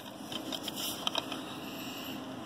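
A plastic DVD case being handled and turned over, with light rustling and a few small clicks about a second in, over a steady background hiss.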